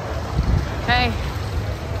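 Hailstorm outside a canvas tent: a steady rushing noise with a low rumble, from the storm beating on the tent and wind.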